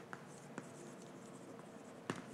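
Chalk writing on a blackboard: faint scratching with a couple of light taps in the first half.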